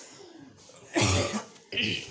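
A man coughs once, about a second in, followed by a short vocal sound near the end.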